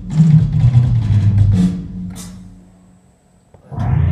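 Drum kit struck with sticks over rock music for about the first second and a half, then the sound rings out and fades to a near-quiet break before the drums and music come crashing back in just before the end.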